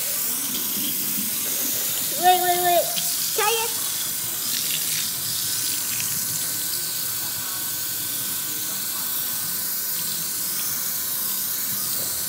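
Kitchen faucet running steadily into a stainless-steel sink, the stream splashing over a head of curly hair as residue is rinsed out of the scalp.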